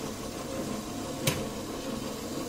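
Quiet room noise with a single short, sharp click a little over a second in.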